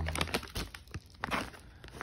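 Plastic pouch of laundry detergent pods crinkling as it is handled: a run of irregular crackles.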